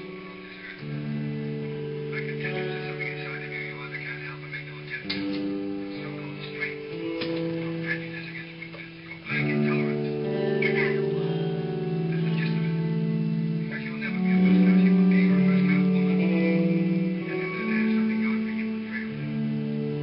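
A band playing music led by guitar, with held chords that change every few seconds. It grows louder about halfway through.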